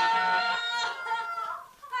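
A woman wailing in one long, high cry that trails off near the end.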